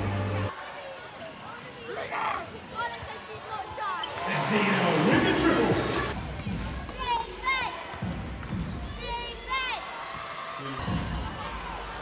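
Live basketball court sound: sneakers squeak on the hardwood in two quick clusters of chirps in the second half, the ball bounces, and crowd voices carry through the arena.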